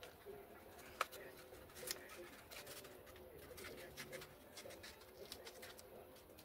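Faint handling sounds of a foam RC model plane and blue painter's tape being pressed on by hand: soft rustles and small taps, with two sharper clicks about one and two seconds in, over a faint steady hum.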